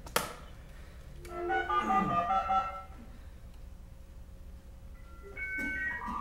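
An electronic device powering up with dial-up modem sounds: a click, then a short run of stepped electronic tones, a faint steady tone, and near the end a series of stepped dialing beeps.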